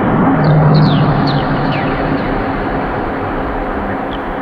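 Electronic music from a live set: a dense, noisy drone with low sustained tones, and a few short falling high chirps in the first two seconds.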